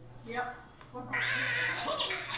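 Cartoon bird and pig squawks from an Angry Birds–themed code.org maze puzzle as the program runs and the bird moves to the pig. A louder, longer squawk comes about a second in.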